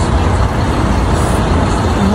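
Loud, steady street noise: the rumble of road traffic in a city centre.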